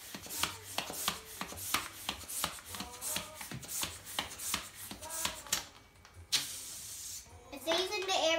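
Plastic hand balloon pump being worked quickly, about four strokes a second, inflating a latex balloon; the strokes stop about five and a half seconds in, followed by a hiss of about a second.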